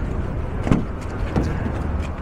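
A car's rear door being opened by hand: a faint latch click about a third of the way in, over a steady low outdoor rumble.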